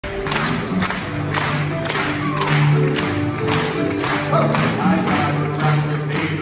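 Piano playing the hoedown vamp, with the audience clapping along in time at about two claps a second.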